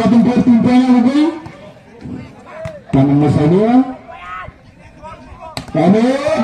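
A man's voice speaking or calling out loudly in three bursts with quieter pauses between, and a single sharp knock near the end.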